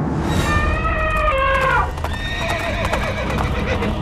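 A horse whinnying: one long call of about a second and a half that drops in pitch at its end, over a steady low rumble.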